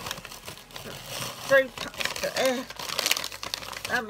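A shopping bag and its wrapping crinkling and rustling as a bath bomb is taken out and handled, a steady run of crackly rustles.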